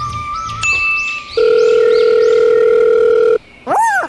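Music plays and ends about a second in. It is followed by a steady telephone tone held for about two seconds, which cuts off suddenly. A short voice-like call begins near the end.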